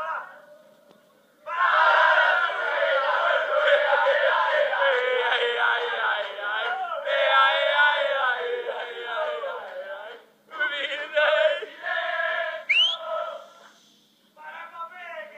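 A group of men chanting and shouting together, loudly and all at once. It starts about one and a half seconds in, breaks off for a moment near the ten-second mark, then picks up again. A sharp rising whistle cuts through near the end.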